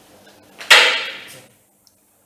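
A sudden loud swish of rustling noise, like clothing or a hand brushing right against the microphone, fading out over under a second.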